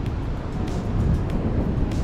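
Large ocean waves breaking on a sandy beach, heard as a steady low rumble with wind on the microphone.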